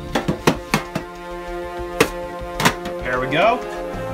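Background music plays throughout, over sharp knocks from metal collector tins being handled and set down. There are about six knocks in the first three seconds.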